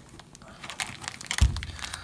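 Small plastic bag crinkling and crackling as fingers pull it from a metal tin, with scattered light clicks and one soft knock about one and a half seconds in.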